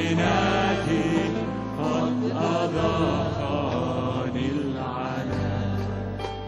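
Arabic Christian worship hymn sung by a male lead voice and a group of singers, with a band accompanying on bass guitar; the bass notes hold and change every couple of seconds under the melody.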